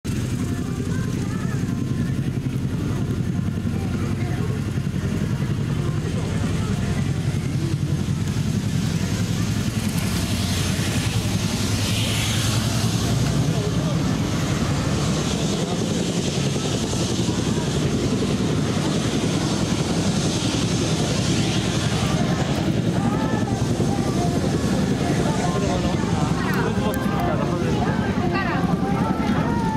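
A steady low engine drone under the chatter of a crowd, with a high rushing hiss swelling in from about ten seconds in and fading after about twenty.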